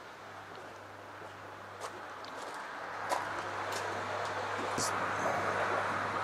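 Running water in a koi pond filter system: a steady rushing hiss that grows louder from about halfway through, over a steady low hum.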